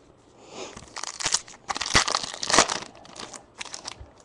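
A 2013 Bowman Chrome baseball card pack's wrapper being torn open and crumpled: irregular crinkling, crackling bursts starting about half a second in, loudest in the middle.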